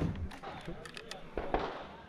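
Several faint, sharp pops and clicks over light rustling.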